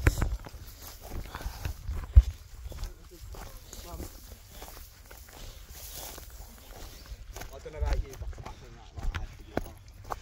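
Footsteps of hikers walking through tall dry grass and scrub onto a stony dirt track, with irregular crunching and the rustle of grass against legs. A single low thump about two seconds in stands out as the loudest sound.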